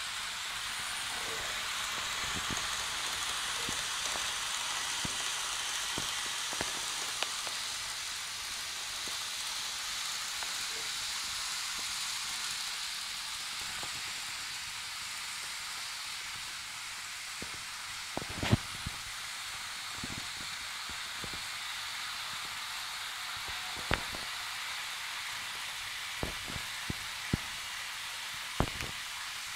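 KATO EH500 model train running along the layout track: a steady hissing rolling noise that swells slightly in the first third, with a few sharp clicks in the second half.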